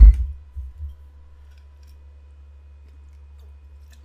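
A sudden loud low thud, followed by two weaker thuds within the first second, then only a steady low hum.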